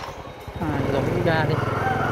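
Motorbike engine running as it is ridden slowly, getting noticeably louder about half a second in.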